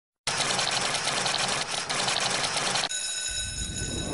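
A fast, even mechanical rattle for about two and a half seconds. It cuts to a steady high electronic tone with a low rumble building beneath it, as a sound effect in an animated TV intro.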